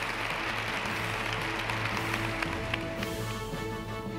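Audience applauding over an outro music track; the applause dies away about three seconds in, leaving the music playing.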